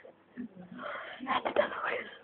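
Stifled, wheezy laughter, breaking out about a second in.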